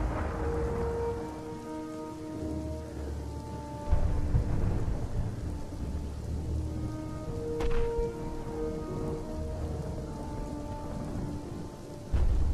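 Slow background music with held notes over a rain-and-thunder soundscape: a steady rain hiss and low rolling rumbles. A heavy rumble comes in suddenly about four seconds in, and a sharp crack sounds about eight seconds in.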